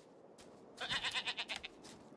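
A goat bleating: one quick, quavering call that starts about a second in and lasts under a second.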